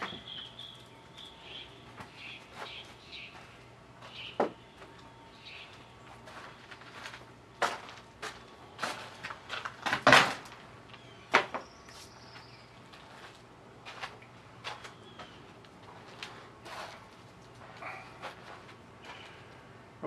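Irregular knocks, clicks and clatter of removed tractor floor panels and parts being handled and set down, with the loudest knock about halfway through.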